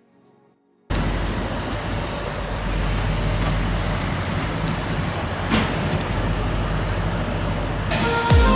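Street traffic at a busy city junction: the steady noise of double-decker buses and cars, starting abruptly about a second in after a moment of near silence.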